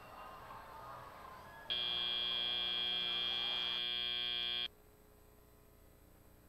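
The FRC field's end-of-match buzzer sounds as the match clock runs out. It is one loud, steady, high-pitched tone held about three seconds, starting nearly two seconds in and cutting off suddenly.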